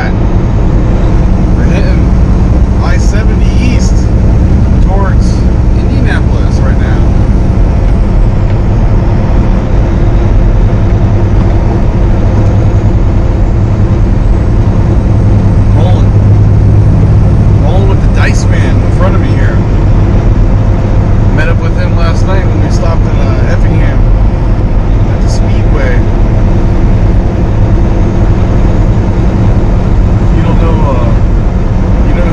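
Steady low drone of a Kenworth T680 semi truck's engine and road noise, heard inside the cab while cruising at highway speed, with scattered short clicks and rattles.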